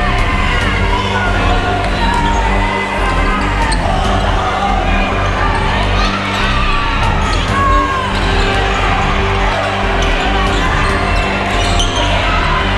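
Basketball game on a hardwood gym floor: the ball bouncing as it is dribbled and sneakers squeaking in short chirps, with voices and music behind.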